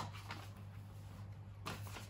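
Faint handling of a paper birthday card and envelope: soft rustling with a light tick or two, over a steady low hum of room tone.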